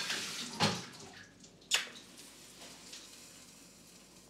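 Kitchen tap running briefly and turned off within the first second or so, then a single sharp clack of kitchenware near two seconds in, and quiet after.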